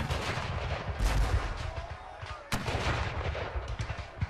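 Battle soundtrack of musket and cannon fire: heavy booming blasts at the start, about a second in and about two and a half seconds in, with scattered sharp gunshots crackling between them.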